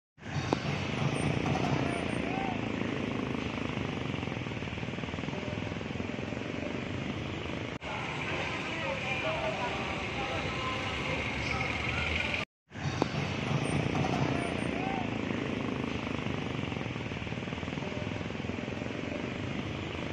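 Busy city-street ambience: steady traffic noise with indistinct voices of passers-by, broken by a short silent gap about twelve seconds in.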